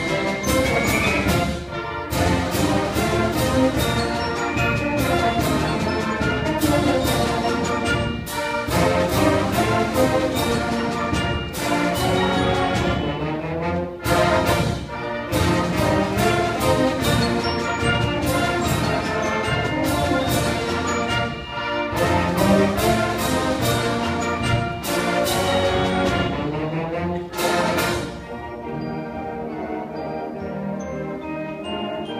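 Concert band of woodwinds, brass and percussion playing a piece, with frequent accented percussion strikes; it drops to a softer passage near the end.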